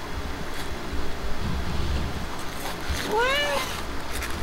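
A cat's single short meow about three seconds in, rising in pitch and then levelling off.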